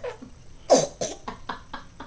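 A baby coughing once with a teething ring in her mouth, followed by a few shorter, weaker sputters.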